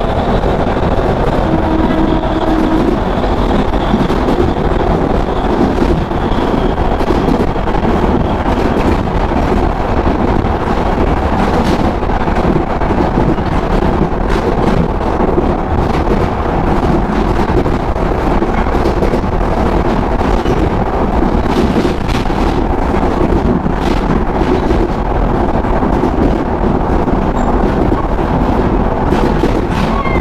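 Passenger train running along the track, heard from an open coach window: a steady rumble and rush with wind buffeting the microphone, and occasional sharp clacks.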